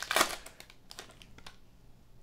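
Foil Panini Select trading-card pack crinkling as it is opened, loudest in the first half second. After that come faint rustles and ticks as the cards are slid out.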